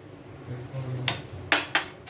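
Steel spoon clinking against kitchenware: three quick, sharp clinks in the second half.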